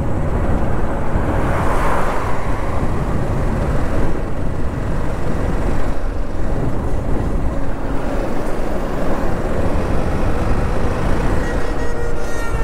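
Wind rushing over the camera's microphone on a moving motorcycle at road speed, with the TVS Apache RR 310's single-cylinder engine running steadily underneath. The noise is loud and unbroken throughout.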